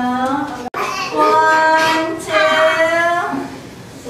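Young children's voices singing or chanting in unison, two long held phrases of about a second each. A momentary drop to silence comes under a second in.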